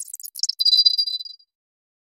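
A bright, glittering chime sound effect from a logo intro animation, with sparkly high tinkles settling into one held high ding that cuts off about one and a half seconds in.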